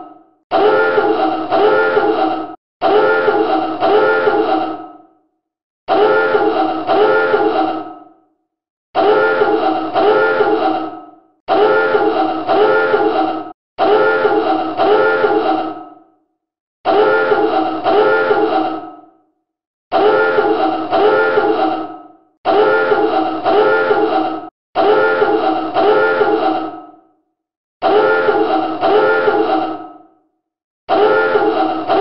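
Submarine dive alarm sounding over and over: about eleven loud, pitched blasts, each about two seconds long and pulsing a few times, separated by short, slightly uneven gaps.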